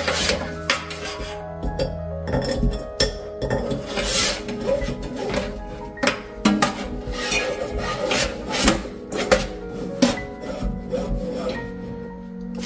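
Braided pull-down sprayer hose being fed through a kitchen faucet spout, rubbing and scraping against the metal with many small knocks, over background music.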